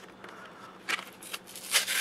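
Card-backed plastic blister pack being worked open by hand: a few scattered crackles and scrapes of plastic and card, then louder rustling of cardboard near the end.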